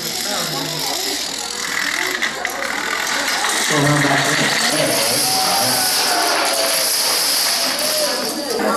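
Plastic dominoes toppling in a running chain, a continuous fine clattering that grows stronger about five seconds in, over the chatter of audience voices.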